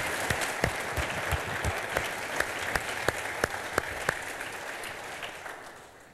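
Audience applause: many hands clapping together, dying away near the end.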